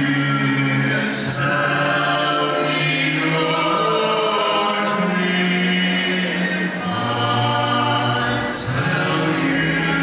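Male vocal quartet singing a cappella in close harmony, holding long chords with a low bass part underneath, amplified through microphones. Brief sharp 's' sounds cut through about a second in and near the end.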